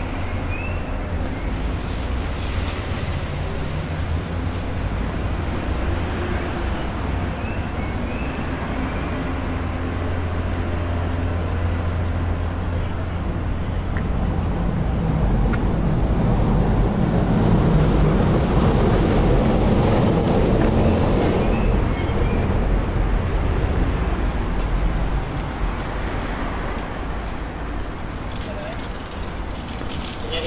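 City street traffic: a steady low rumble of vehicle engines and tyres, swelling as a heavier vehicle passes about halfway through, then easing off.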